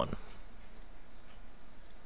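Faint computer mouse clicks, one about a second in and another near the end, over a steady low hum and hiss.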